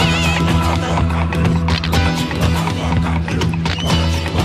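A 1970s dance-pop record in an instrumental stretch, with a steady bass line and busy percussion. A high, wavering warble fades out in the first half-second.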